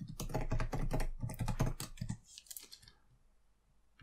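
Typing on a computer keyboard: a quick run of keystrokes for nearly three seconds, then it stops.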